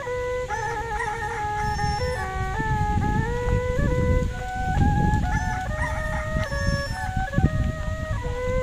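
Background music: a melody on a flute-like wind instrument, moving in steps from held note to held note. A low rumble sits underneath, strongest in the middle.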